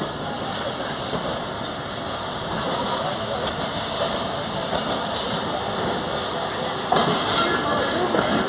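Passenger train rolling slowly out of a station, heard from an open coach door: a steady noise of the running coach and wheels, a little louder about seven seconds in.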